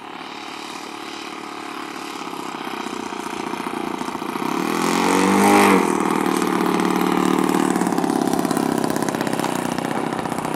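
Engine of a radio-controlled model Piper Cub buzzing on a low pass. It grows louder over the first five seconds, drops in pitch as it goes by at about five and a half seconds, then runs steadily as it moves away down the runway.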